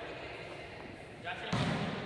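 Echoing sports hall, quiet at first, then a low thump about one and a half seconds in: a ball bouncing on the hall floor, with faint voices.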